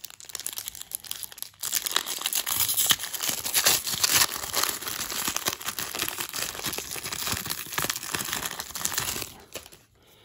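Foil wrapper of a baseball card pack being torn open and crinkled by hand: a dense, irregular crackle that grows louder about one and a half seconds in and stops shortly before the end.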